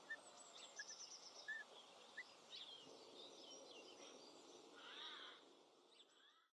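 Faint outdoor birdsong: scattered short chirps, high trills and gliding notes from wild birds over a steady background hiss, with a slightly louder call about five seconds in.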